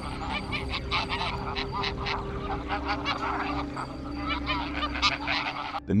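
A flock of greylag geese calling, with many short honks overlapping throughout. The calls cut off just before the end.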